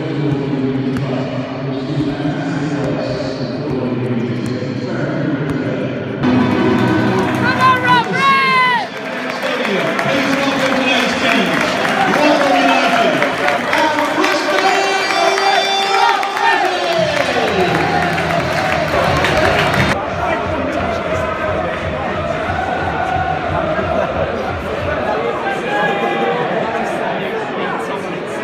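Football stadium atmosphere over several cut-together clips: music over the PA with crowd noise, cheering and clapping as the teams come out, then general crowd noise once play is under way. The sound changes abruptly about six seconds in and again near the end.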